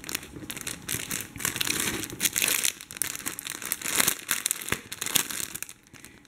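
Clear plastic packet of cotton embroidery floss skeins crinkling as it is handled, in irregular crackles.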